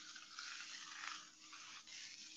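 Sand trickling from a glass jar onto a paper painting: a faint, grainy hiss that wavers as the pour goes on.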